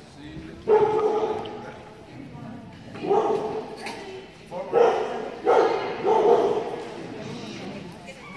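A dog barking several times, the barks spread across a few seconds and echoing in a large hall.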